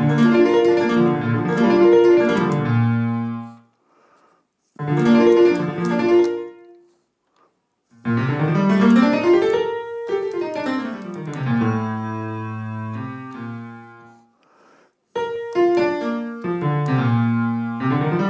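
Virtual piano plugin played from an Odisei Travel Sax MIDI wind controller: four short phrases of single piano notes with brief pauses between them, one of them climbing up a scale and coming back down.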